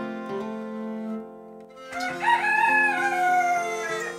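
A rooster crowing once, a single long call of about two seconds starting halfway through, over background plucked-guitar music.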